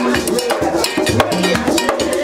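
Vodou ceremonial music: a fast, dense beat of drums with a bright metal bell-like strike running through it, over deep held notes that step in pitch.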